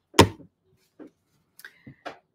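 Craft materials handled on a wooden tabletop: one sharp knock shortly in, then a few faint ticks and paper sounds near the end.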